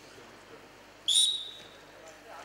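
A referee's whistle blown once, a short, shrill blast about a second in that starts the wrestling bout.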